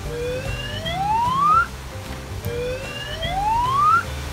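An edited-in rising whistle-like sound effect, played twice, each glide climbing steadily in pitch for about a second and a half. It sits over background music with a low beat.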